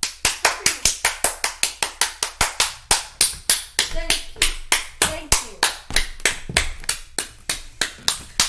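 A child clapping his hands steadily, about four claps a second.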